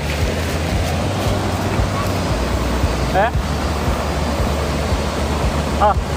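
Shallow mountain river rushing over rocks, a steady loud noise, with a dog splashing as it wades in. A short rising voice-like call comes about halfway through, and a person's voice at the very end.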